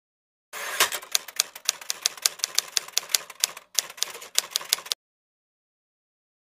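Typewriter sound effect: a quick run of sharp key clacks, about four or five a second, with a brief break a little past halfway, cutting off suddenly about five seconds in.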